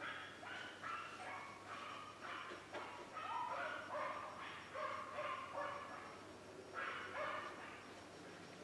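A run of faint, short high-pitched yelping and whining calls, one after another, bending in pitch, with a louder pair near the end.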